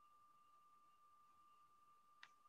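Near silence: room tone with only a faint, steady high-pitched tone.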